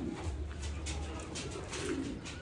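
Caged domestic pigeons cooing, with a few soft clicks in the second half over a low steady rumble.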